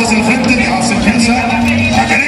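A man's voice over an arena loudspeaker, blended with the steady noise of a large crowd.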